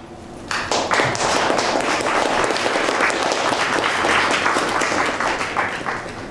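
Audience applauding: a dense patter of many hands clapping that starts about half a second in, holds steady, and begins to thin out near the end.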